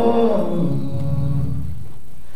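Gospel song playing, a male singer's voice bending into and then holding a low note over the accompaniment.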